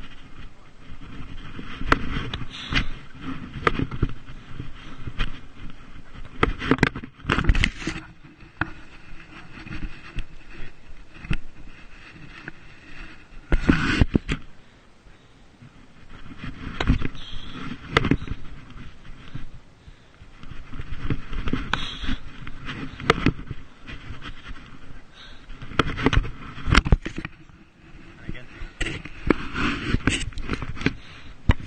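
Movement noise on a chest-mounted action camera: irregular thumps and rubbing against the microphone, sometimes in quick clusters and sometimes easing off for a second or two.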